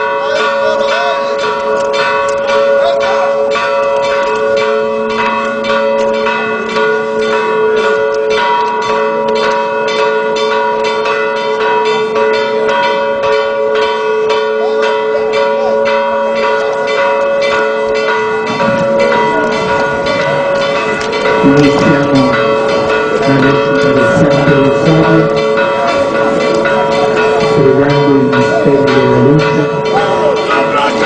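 Church bells ringing in a continuous peal, many strikes overlapping into a sustained ringing. About two-thirds of the way in, voices join underneath and the sound grows louder.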